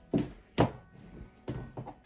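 High-heeled pumps stepping on a wooden floor: about four sharp knocks, unevenly spaced.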